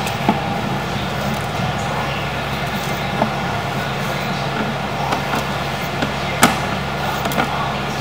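Steady low mechanical hum under an even wash of noise, with a single sharp click about six and a half seconds in.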